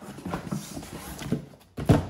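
Plastic DVD cases being handled and lifted out of a cardboard shipping box, with scattered knocks and rustling, and a louder knock near the end.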